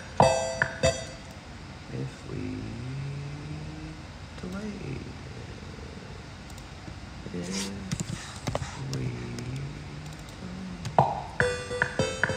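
A few quick, bright musical notes at the start, then a man's low voice sounding quietly and wordlessly, sliding slowly up and down in pitch for several seconds; the bright notes return near the end.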